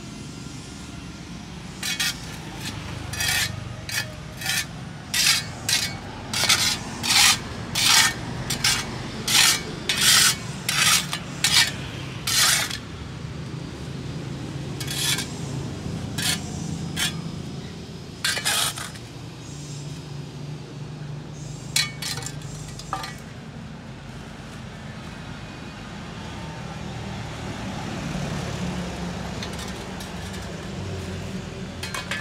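Metal shovel blade scraping across concrete paving stones while scooping up dirt and dead leaves. There are about two quick scrapes a second for the first dozen seconds, then a few scattered ones. A low steady rumble fills the quieter second half.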